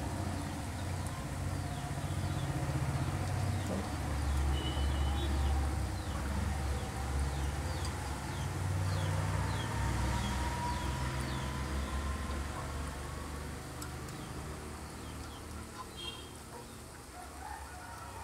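Unniyappam batter balls frying in bubbling coconut oil in a multi-cup unniyappam pan: a steady sizzle over a low rumble, with a few short high chirps scattered through.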